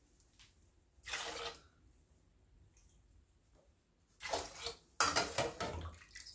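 Kashmiri pink tea splashing in a steel saucepan as a ladle scoops it up and pours it back. There is one short splash about a second in, then repeated louder splashes from about four seconds in.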